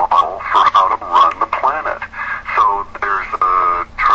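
Speech only: a person talking continuously, with the narrow sound of a radio broadcast.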